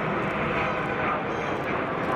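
Jet formation flying overhead: a large twin-engine tanker aircraft escorted by fighter jets, heard as a steady jet rumble. Voices are mixed in underneath.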